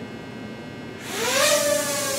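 Ryze Tello mini quadcopter's motors and propellers spin up about a second in, a rising whine that levels off into a steady hover buzz as the drone lifts off.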